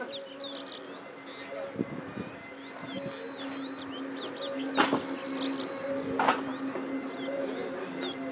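Small birds chirping in quick clusters of short notes over a steady low hum, with two short sharp sounds about five and six seconds in.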